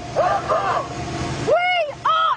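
Men's raised, high-pitched voices calling out over a steady low rumble. The rumble cuts off suddenly about one and a half seconds in, and a shout carries on after it.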